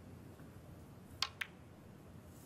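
A snooker shot: two sharp clicks about a fifth of a second apart, a little past a second in. The first and louder is the cue tip striking the cue ball, the second the cue ball hitting an object ball.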